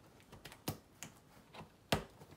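A cardboard box being opened, its packing tape pulled and worked free: a few sharp clicks and snaps, the loudest near the end.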